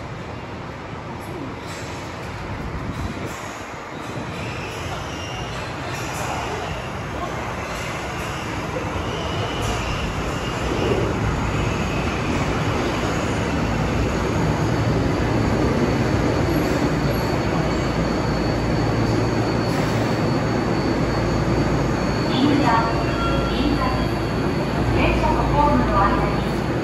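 A Tokyo Metro Ginza Line 1000-series subway train arriving at an underground platform: the rumble of wheels and traction motors grows steadily louder as it pulls in, with a high whine as it brakes. Short repeated tones come near the end.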